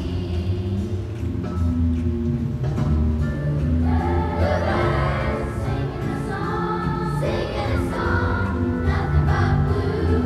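Children's choir singing a jazzy song in unison over a steady instrumental accompaniment, with a low bass line moving underneath.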